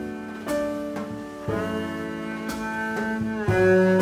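Jazz quartet playing: double bass, piano, saxophone and drums, with long held notes and chords and a few sharp strokes about two seconds apart.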